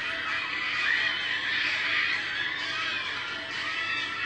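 Award-show broadcast audio playing back: music mixed with a crowd cheering. It sounds thin, with little bass.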